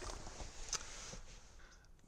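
Faint handling noise: a few light, scattered clicks and rustles over a low steady hiss.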